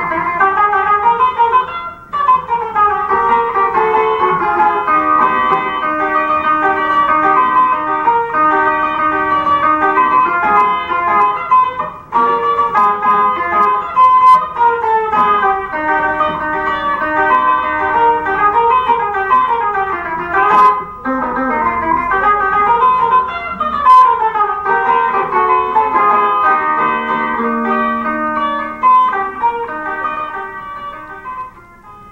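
Cavaquinho played through a small amplified speaker: a melody of many short plucked notes.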